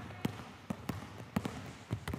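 Basketball being dribbled on a hardwood gym floor: a string of sharp bounces, about three a second, slightly uneven.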